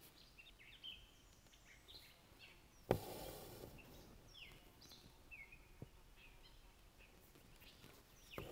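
Faint bird chirps, short falling calls scattered throughout, over a quiet outdoor background. A single sharp tap about three seconds in, followed by a brief soft rustle, and a smaller tick a few seconds later.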